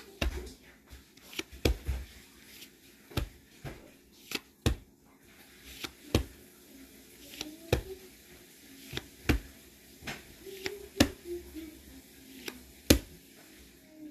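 Pokémon trading cards handled one at a time. There is a string of sharp clicks and snaps at uneven spacing, about one or two a second, as each card is slid off the stack, with the sharpest snap near the end. Faint voices murmur underneath.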